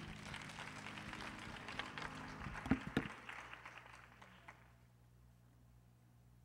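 Faint room noise with a few scattered knocks, dying away after about four seconds to a steady low hum.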